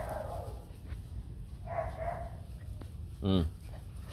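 Hmong bobtail puppies giving two short cries as they wrestle in play, one at the start and one about two seconds in. A man's voice says a brief word near the end.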